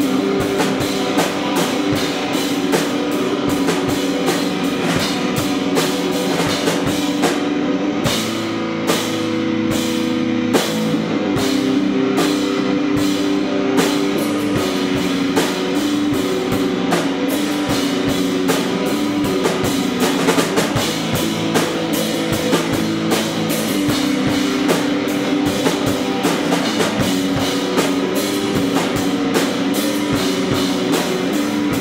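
Live screamo band playing loud rock on electric guitar and drum kit, with a steady, driving beat. The top end thins out for a few seconds about eight seconds in, then the full sound returns.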